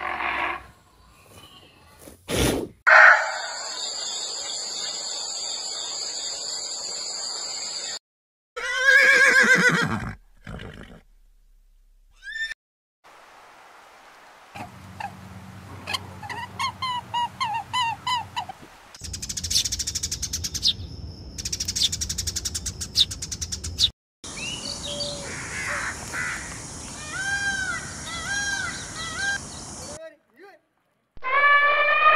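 A string of different animal sounds cut one after another. A steady high-pitched drone lasts about five seconds, a single falling call follows near ten seconds, and the second half is filled with repeated chirps and arching twittering calls.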